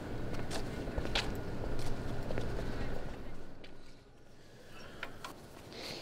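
Footsteps with a few sharp knocks and clinks of metal bistro chairs being picked up and carried, over a steady low hum. About halfway the hum stops and it turns quieter, with one more knock near the end.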